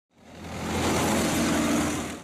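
Armoured military vehicles driving on a road: a steady engine hum under a wide rushing noise, fading in at the start and fading out at the end.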